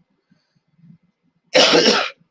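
A man coughs once into his hand, a short loud cough about one and a half seconds in.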